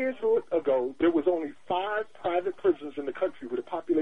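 Speech only: a person talking without a break, with the thin, narrow sound of a telephone line.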